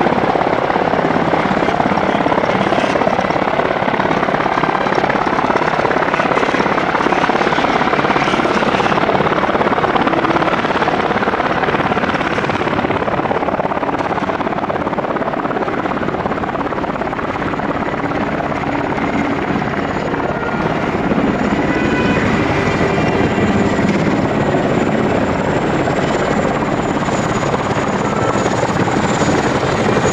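Military helicopters running loud and steady: a UH-60JA Black Hawk's rotor and turbine noise, then, from about two-thirds of the way in, a CH-47 Chinook approaching with a thin high turbine whine.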